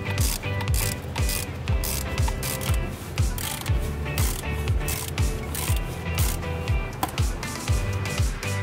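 A ratchet wrench with a socket clicking in rapid runs as bolts are worked in a car's engine bay, over background music with a steady beat.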